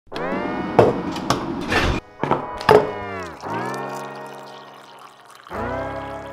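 Background music: sustained chords with a few sharp percussive hits in the first three seconds, and a new chord coming in near the end.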